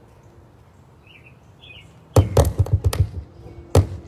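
Loud amplified pops and thumps through the PA speaker: a quick run of about half a dozen about two seconds in, then a single one near the end. This is the sound of the guitar's cables and connections being handled while the sound system has a power problem. Faint bird chirps come before them.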